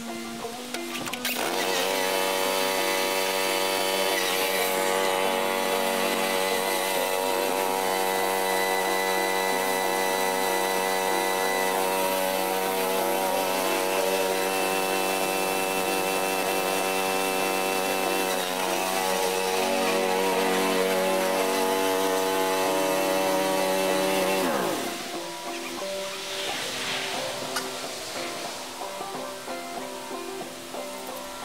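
John Deere 165 lawn tractor engine running steadily at speed, then winding down and stopping about 25 seconds in, over background banjo music.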